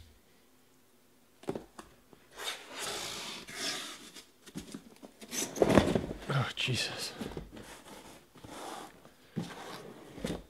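A cardboard shipping case being opened: a blade cut along the packing tape, then the cardboard flaps pulled open and handled. It comes as a run of irregular scraping, tearing and rustling noises starting about one and a half seconds in, loudest around the middle.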